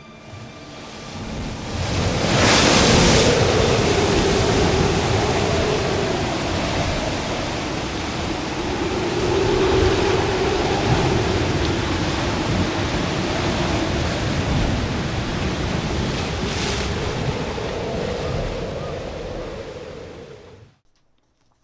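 Stormy sea sound effect: heavy surf with a rising-and-falling wind howl. It swells in over the first couple of seconds to a loud crash of a wave, then rolls on with a smaller crash later and fades out at the end.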